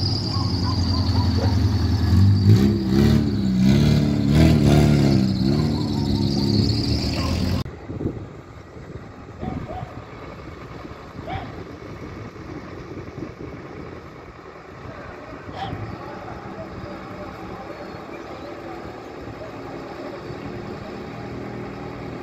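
A vehicle engine running steadily under raised voices, loud for the first several seconds. After an abrupt cut about eight seconds in, only quieter outdoor ambience with faint voices and a few light clicks.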